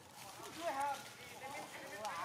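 Baby macaque crying in short, high, wavering squeals, loudest about half a second in and starting again at the end, as its mother stops it nursing.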